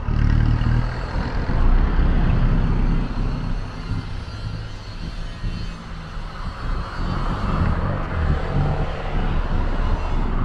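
Street traffic: motor vehicle engines running close by, loudest in the first three seconds, easing off in the middle and building again towards the end.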